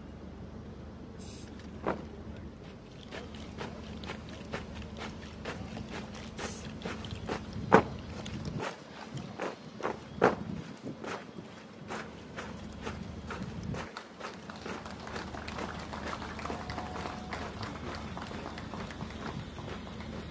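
Boots of a marching squad in silent drill, with no spoken commands: a run of footfalls and stamps on packed earth. A few sharper impacts stand out, the loudest about eight seconds in.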